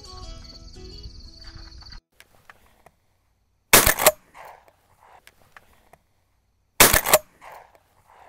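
Music for the first two seconds, then two loud shotgun shots about three seconds apart.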